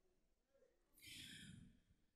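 Near silence, with one faint breath drawn into a handheld vocal microphone about a second in, lasting about half a second.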